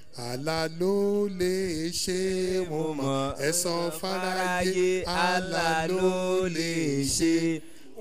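A man's voice chanting into a handheld microphone in a sing-song melodic recitation, long held notes on a fairly level pitch with short breaks between phrases.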